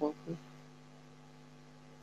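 A low, steady electrical hum on the call audio, two fixed low tones with nothing else over them, after the last syllable of a spoken word at the very start.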